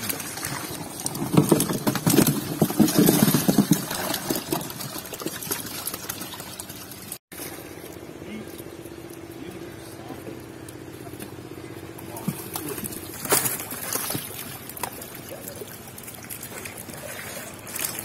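Indistinct voices of people working, over water splashing and trickling in a shallow pond.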